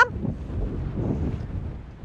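Wind buffeting the microphone: a low, steady rumble with no distinct sound event, easing off slightly near the end.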